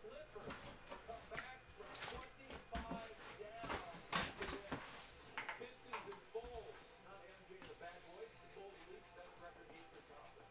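A faint voice or singing in the background, with scattered clicks and knocks from handling things on a desk; the loudest knock comes about four seconds in.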